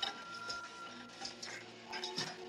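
Film soundtrack playing music with a held note, over a run of sharp clicks and knocks that make a mechanical clatter.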